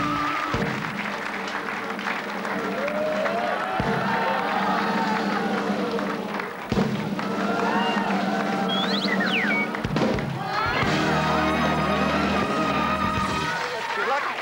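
Game-show music cue playing while the prize wheel spins, with sustained chords and a melody over them; the music gets fuller in the low end about eleven seconds in.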